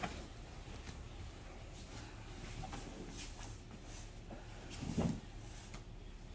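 Faint rustling of gi cloth and bodies shifting on a grappling mat as a choke is applied, with a soft thud about five seconds in.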